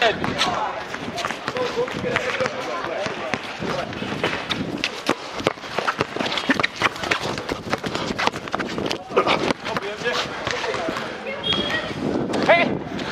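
A basketball bouncing on an outdoor concrete court during a pickup game: many irregular, sharp bounces and footfalls, with players calling out now and then.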